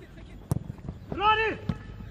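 A football struck once, a sharp thud about a quarter of the way in, followed by a brief man's shout.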